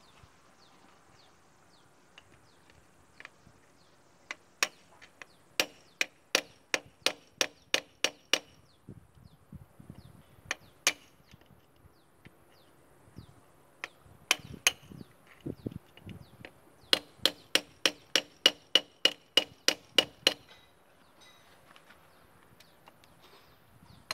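Hammer blows on a steel chisel held against an excavator final drive's bearing, metal ringing at each strike, to drive the bearing off. The blows come in two quick runs, about ten in the first few seconds and about a dozen faster ones near the end, with a few single strikes in between.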